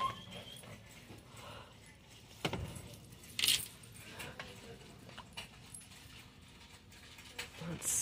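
Quiet shop background with a few brief clatters of plastic makeup palettes being handled on a shelf, the two clearest about two and a half and three and a half seconds in.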